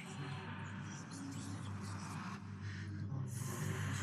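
Soft handling sounds: light rustles and taps of foam pieces being slid and set down on a cutting mat, over a steady low hum.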